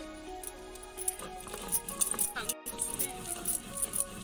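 Background music over repeated scraping strokes of a stone roller grinding mustard seeds and garlic to a paste on a flat sil-batta grinding stone.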